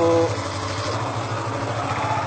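Motorcycle riding past, its engine running with a steady low hum.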